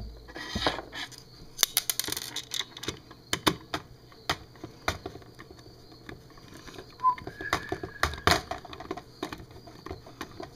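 Screwdriver driving a small screw into the plastic handle of a bug zapper racket, heard as irregular clicks and short scrapes of metal on plastic along with handling of the casing. The clicks bunch up about two seconds in and again near eight seconds.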